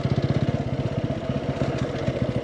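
Motorcycle engine running steadily at low revs, an even, rapid putter of firing pulses.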